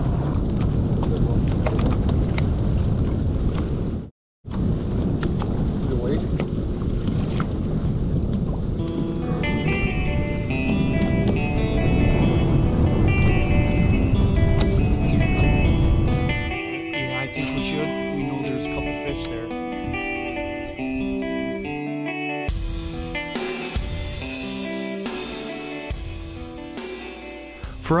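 Heavy wind rumble on the microphone of a boat on open water, broken by a brief dropout about four seconds in. Background music comes in under it and takes over about halfway through, growing fuller near the end.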